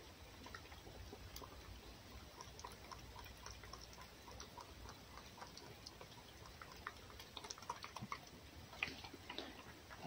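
A red fox eating from an enamel bowl: faint, irregular small clicks and smacks of its mouth at the food and the bowl, busier in the last few seconds.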